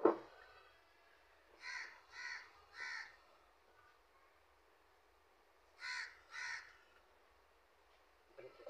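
A crow cawing: three harsh caws about two seconds in and two more about six seconds in. A brief sudden bump at the very start is the loudest sound.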